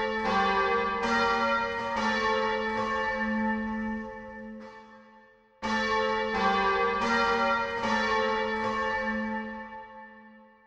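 Bells ringing a short phrase of a few struck notes that ring on and die away, then the same phrase struck again about halfway through.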